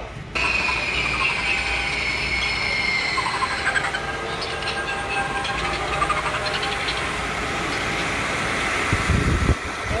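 A fan blowing a steady rush of air, starting suddenly a moment in, with a falling whine over the first few seconds.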